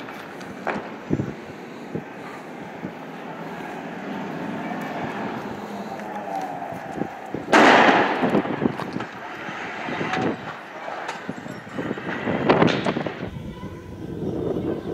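Several sharp bangs and blasts over steady street noise, a few small ones early on, the loudest about halfway through with a short echoing tail, and another strong one near the end: explosive reports of weapons fire in a street clash.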